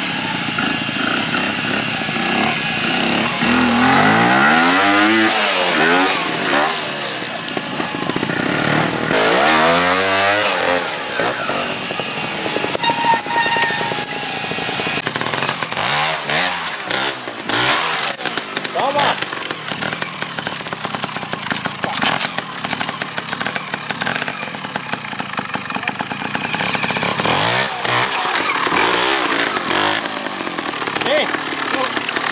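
Trials motorcycle engines revving in short bursts, the pitch climbing and dropping again several times as the riders feed in throttle to clamber over rocks and roots.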